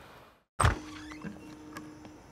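A door opening with one sharp thud, followed by a few light clicks of its latch and fittings over a faint steady hum.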